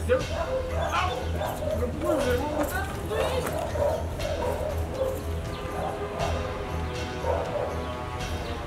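A dog barking and yipping, several calls in the first few seconds and more near the end, over steady background music.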